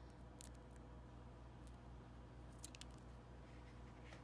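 A few faint snips of scissors trimming sticky-backed copper paper off the edge of a small cardboard disc, spaced about a second apart over a low room hum.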